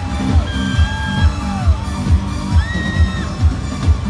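Amplified live Persian pop music with a heavy kick drum beating about twice a second and long held melody notes that glide up and down above it, picked up from among the audience.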